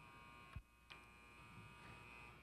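Near silence with a steady, faint electrical hum, and a soft click about half a second in.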